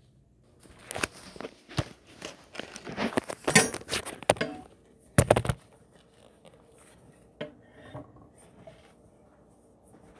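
Handling noise from a phone or camera being carried and set down on a granite countertop: a string of knocks, clicks and rustles, with two loudest bumps about three and a half and five seconds in, then only a few faint ticks.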